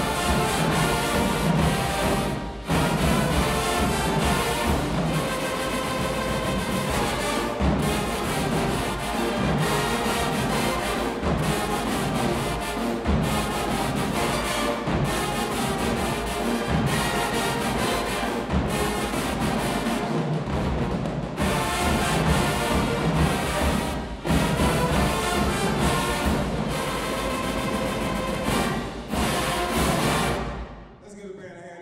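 Marching band playing a loud piece: sousaphones, brass and woodwinds over a drumline of snare, tenor and bass drums, with a few brief breaks in the playing. The music cuts off at the very end.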